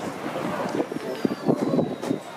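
Rumbling and a few scattered pops from an outdoor fireworks display in a short lull between bursts, with crowd voices.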